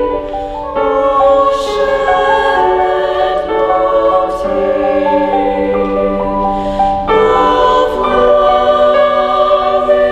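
Young women's choir singing a slow piece in several parts, holding sustained chords that shift every second or so, with sharp 's' consonants cutting through now and then.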